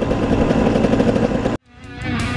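Dirt bike engine running steadily as the bike rides along a gravel road, recorded on a helmet camera. It cuts off abruptly about a second and a half in.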